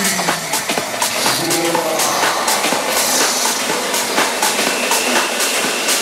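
Techno/tech-house track in a breakdown. The kick drum and bass are out, leaving ticking percussion, a hissing noise wash and a few scattered synth notes.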